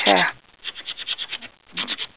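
Rapid back-and-forth scratching of a paper blending stump's tip rubbed on a sandpaper file, about ten strokes a second for about a second, cleaning color and pencil lead off the stump.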